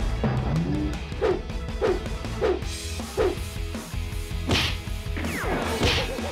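Comedic background music with cartoon sound effects laid over it: four short falling blips about a second apart, then two quick swooshes near the end, the last one a punch hit.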